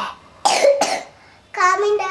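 A young child coughs twice in quick succession, then makes a drawn-out voiced sound about a second and a half in.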